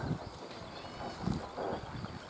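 Quiet outdoor ambience by open water, with faint distant bird chirps and a couple of soft low thuds just past halfway.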